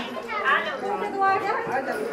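Several women chattering and talking over one another.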